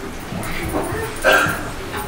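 A single loud, short bark-like yelp about a second and a quarter in, over low voices in the hall.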